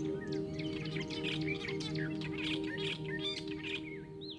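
Many small birds chirping and twittering in quick, varied calls over a sustained, gently pulsing music drone.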